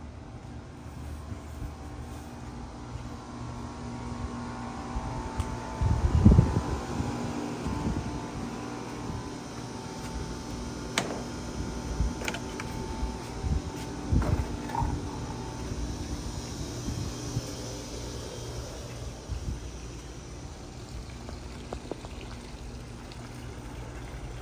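Steady mechanical hum of outdoor home equipment motors, such as an air-conditioner condenser fan and a pool pump, with a few low thumps about six seconds in and again around fourteen seconds.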